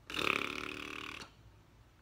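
A woman's burp, one low sound lasting about a second.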